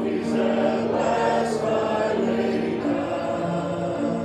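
Congregation singing a hymn together, many voices holding long notes.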